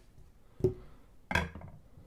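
Two short knocks, about 0.7 s apart, as a Bon Musica violin shoulder rest, a bent metal frame with rubber padding, is set down on the steel platform of a kitchen scale. The second knock rings briefly.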